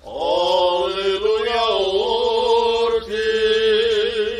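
A male voice of the Armenian Apostolic clergy chanting a liturgical prayer: it swoops up into the first note, then holds long, slightly wavering sung notes.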